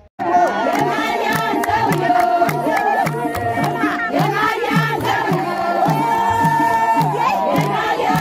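A crowd of women singing together and clapping their hands in a steady rhythm, about two claps a second, with a low beat under it. The sound starts suddenly just after the beginning.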